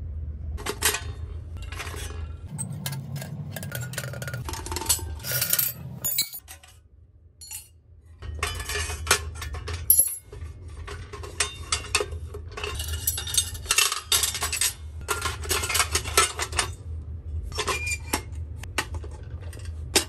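Sheet-steel parts of a very small wood stove clinking and scraping against each other as they are handled and nested together, the square pipe sliding into the stove body, with a lull about seven seconds in. A steady low hum runs underneath.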